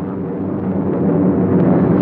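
Droning of B-17 bombers' piston engines, a steady many-toned hum that grows gradually louder.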